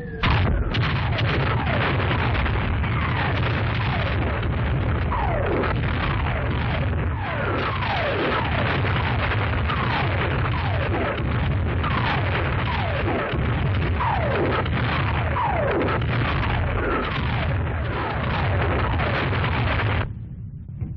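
Artillery barrage on an old film soundtrack: a continuous din of shell bursts over a heavy low rumble, opening with a sudden blast. Many falling whistles of incoming shells, roughly one every second or two, come through the din.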